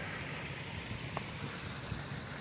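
Steady outdoor background noise, a low rumble with a light hiss and no distinct events, with one faint tick just past a second in.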